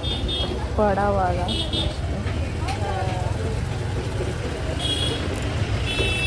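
Street ambience: a steady low traffic rumble with people talking nearby in short bursts.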